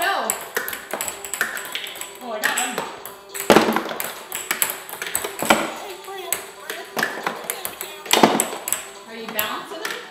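Ping-pong balls bouncing on a hard countertop and against plastic cups: a rapid, irregular run of light clicks and taps from many throws, with bursts of voice between them.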